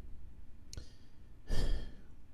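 A man's breath close to the microphone: a short breathy rush about three-quarters of the way through, after a single faint click a little before the middle.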